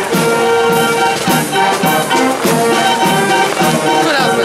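A brass marching band plays a march. Sustained brass notes sound over a steady drum beat of a little under two beats a second.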